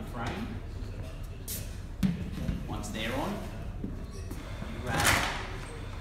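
Curved magnetic bars clacking onto a metal pop-up counter frame: a sharp snap about two seconds in and a louder, longer clatter near the end.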